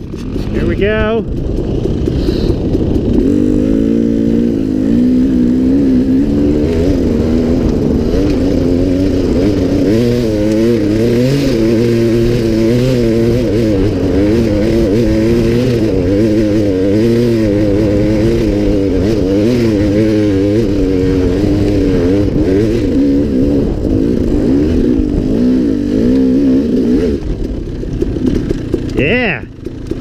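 Dirt bike engine pulling hard under load up a steep climb, held at high revs with the pitch wavering as the throttle works. It drops off near the end, with a short rev blip just before the end.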